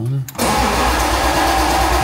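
BMW E36 engine starting on the key after years of standing on petrol at least eight years old: it cranks and catches about half a second in and keeps running with a steady low rumble.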